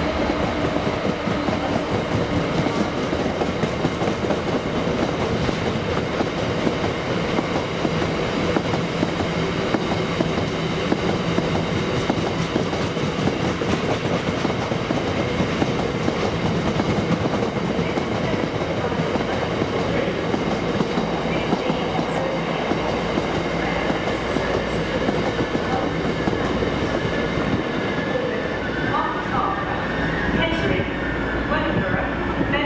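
Long rake of loaded open box wagons on a freight train rolling steadily past, wheels clattering over the rail joints in a continuous rumble.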